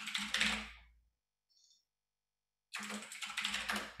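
Typing on a computer keyboard, picked up by the presenter's microphone. It comes in two stretches, one in about the first second and one in the last second and a half, with silence between.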